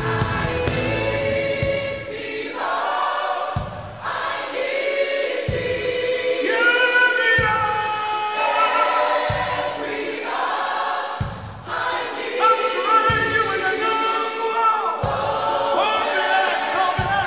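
Gospel choir singing a slow worship song in several-part harmony, with a deep bass beat about every two seconds under the voices.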